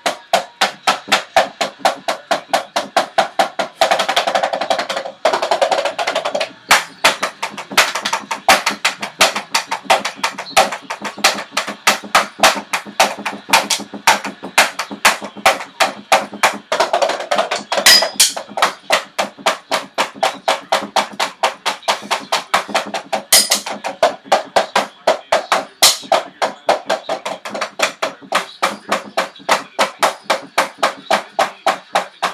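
Wooden drumsticks striking the pads of an electronic drum kit, heard acoustically with the kit's sound going to headphones: a steady run of clacking taps about three to four a second, a quick flurry a few seconds in and a few sharper hits later on.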